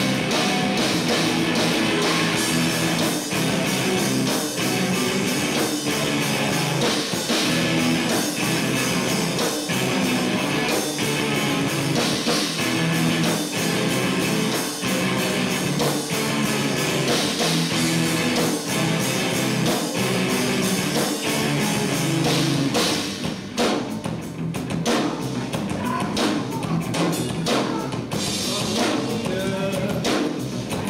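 Live rock band, with electric guitars, bass guitar and drum kit, playing an instrumental stretch of a song, heard from the crowd with thin low end. About three-quarters of the way through, the full band drops to a sparser, quieter passage before building up again near the end.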